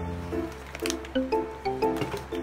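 Light instrumental background music: short pitched notes in a steady rhythm over a low bass, with a brief crisp noise a little under a second in.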